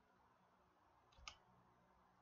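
Near silence, with a single faint computer-keyboard keystroke a little over a second in.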